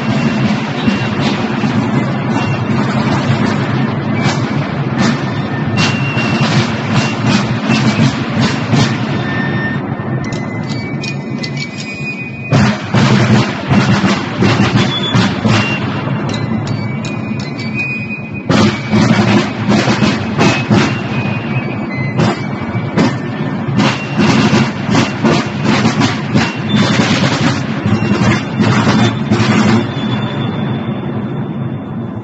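Military side drums of Napoleonic-uniformed reenactor drummers beating a rapid marching cadence, echoing in a large stone hall, with two brief lulls partway through.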